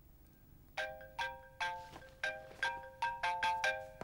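Mobile phone ringing with a melodic ringtone: a quick tune of about nine short chiming notes, starting about a second in.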